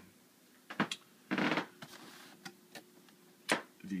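Quiet room with a few small, sharp clicks and a brief soft hiss about a second and a half in; the sharpest click comes just before speech resumes near the end.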